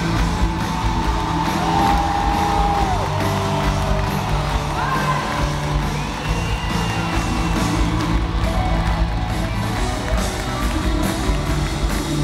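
Live pop-rock band playing loudly in an arena, recorded from among the audience, with crowd whoops and cheers over the music.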